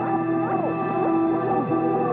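Ambient background music: held synth notes with repeated swooping tones that fall in pitch, several a second.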